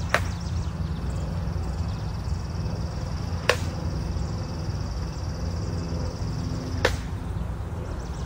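Broadsword blows in a flat-of-the-blade practice drill: three sharp single cracks about three and a half seconds apart.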